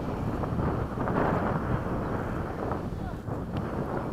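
Wind buffeting the microphone: a steady low rush without a clear tone.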